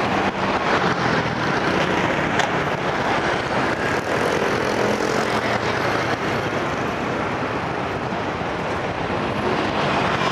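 Steady road traffic noise on a busy city street, mostly motorbike engines humming, with a city bus passing close by near the start.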